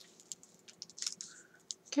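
Paper handling: a run of light, quick clicks and crinkles as a strip of tissue-paper washi tape is pressed by hand onto a paper envelope.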